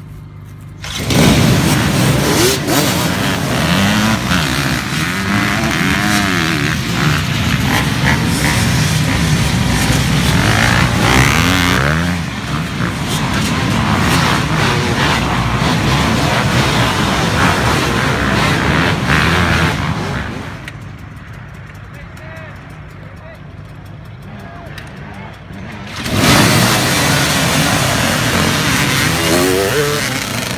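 A line of motocross bikes launching together off the start about a second in: many engines revving hard at once, their pitches rising and falling as the riders accelerate and shift. The engine noise drops away for a few seconds, then another pack of bikes revs up and launches near the end.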